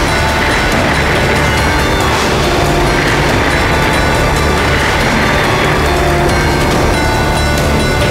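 Loud, steady background music score with a deep, sustained low drone underneath.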